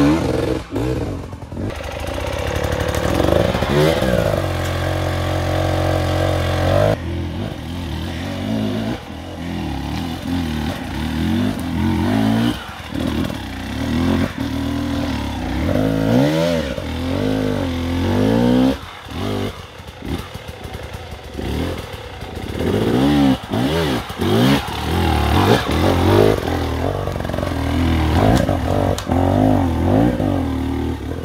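Enduro motorcycle engines revving hard in repeated bursts, the pitch rising and falling as the bikes labour up steep, rocky climbs.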